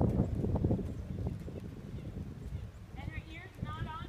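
Hoofbeats of a saddled horse moving in a circle on sandy arena footing, loudest in the first second, then softer. A high wavering call comes near the end.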